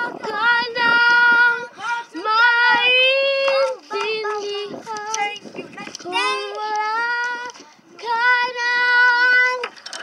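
A young girl singing without accompaniment, a string of long, steady high notes with short breaks between phrases.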